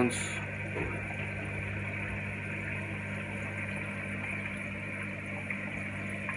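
Reef aquarium sump equipment running: the steady electrical hum of the pumps and protein skimmers under a continuous wash of moving water.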